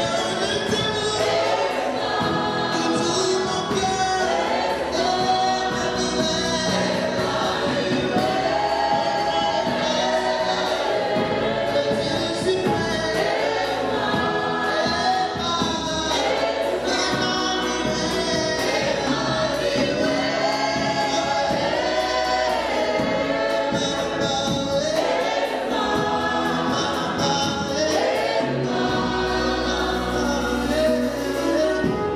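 Gospel worship song sung by a group of singers, mostly women, singing together into microphones as a choir.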